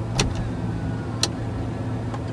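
Steady low hum inside a parked car's cabin, with two short sharp clicks, one near the start and one just past a second in.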